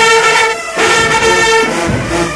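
Marching band brass section, with sousaphones and trumpets, playing loud held notes together, with a short break a little over half a second in before the phrase resumes.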